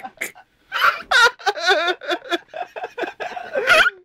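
A group of people laughing hard in repeated bursts, with wavering, high-pitched voices and indistinct words mixed in.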